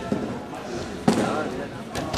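Two thuds on judo mats: a light one at the start and a loud, sharp one about a second in, against background voices in a hall.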